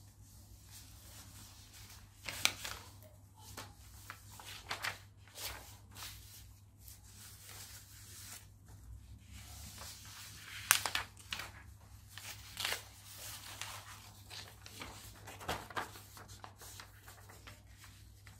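Loose sheets of printer paper rustling and crackling in short, scattered bursts as they are handled and leafed through, loudest about two and a half and eleven seconds in. A faint steady low hum runs underneath.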